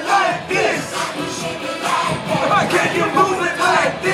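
Upbeat dance music playing loud from a parade float's sound system, with the voices of a large crowd of spectators mixed in.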